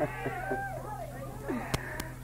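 Faint voices from the congregation: short pitched vocal sounds that rise and fall, over a steady low hum from the recording. There is one sharp click near the end.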